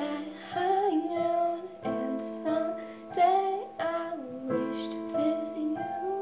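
A girl singing a slow ballad while accompanying herself on piano. Sustained piano chords hold under a sung melody that slides between notes.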